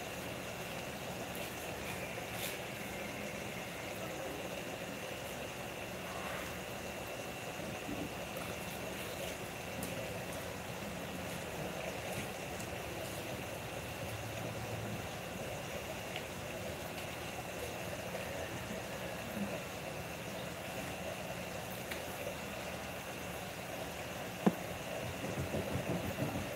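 A steady mechanical hum with a thin, high, steady whine over it, and one sharp click near the end.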